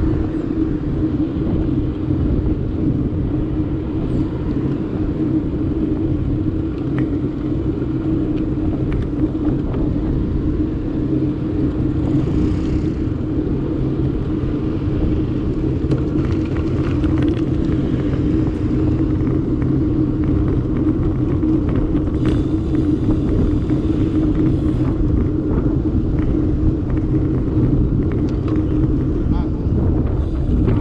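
Steady wind rumble and tyre-on-tarmac road noise from a camera mounted on a moving road bicycle, with motor traffic passing on the road alongside.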